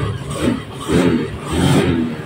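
Honda Beat scooter's 110 cc single-cylinder engine running, swelling and falling in level three times. It keeps running with the alarm armed, a sign that the alarm's kill relay is not yet wired to cut the engine.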